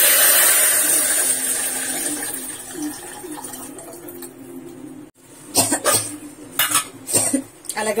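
Pepper rasam liquid poured from a plastic bowl into a hot steel pot on a gas burner, starting with a loud sizzle that slowly dies away over about five seconds. A few sharp clinks of a steel spoon against the pot follow near the end.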